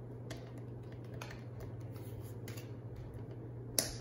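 Tarot cards being handled and laid down on a table: a few soft clicks and taps, then one sharper snap near the end, over a steady low hum.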